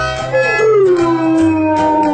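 A large dog howling: one long howl that starts about a third of a second in, slides down in pitch and then holds, over background music.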